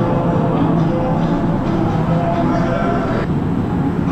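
Many people talking at once in an indistinct crowd chatter, with music playing in the background.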